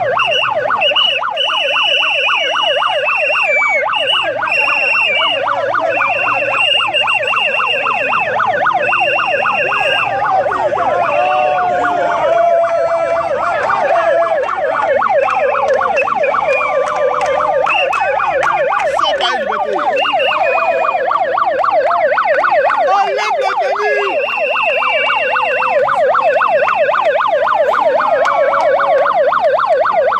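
Handheld megaphone's built-in siren sounding continuously in a fast warbling yelp. A higher steady tone comes on and off over it, mostly in the first ten seconds and again near the end.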